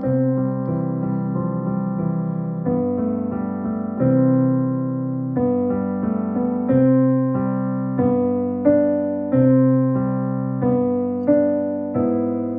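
Piano played with both hands at a slow, even pace: a simple beginner piece with a low left-hand line under a right-hand melody, a new note struck about every two-thirds of a second and left to ring.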